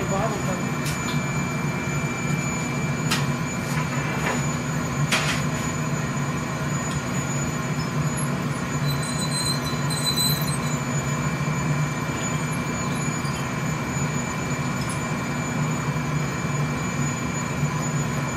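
Steady roaring hum of a glassworks furnace's burner and blower running, with a thin high whine over it. A few sharp clicks come in the first five seconds.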